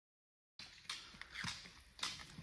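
Dead silence for about half a second, then an open rushing noise with two sharp clicks about half a second apart: roller skiers' pole tips striking an asphalt path as they skate toward the microphone.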